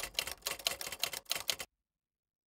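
Typewriter keys clicking as a sound effect, a quick irregular run of strikes that stops abruptly about one and a half seconds in.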